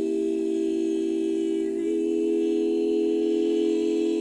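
Women's barbershop quartet singing a cappella in four-part harmony, holding one long sustained chord that moves to a new chord about two seconds in.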